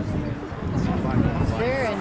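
Spectators' voices over outdoor background noise, with a high, wavering voice calling out in the second half.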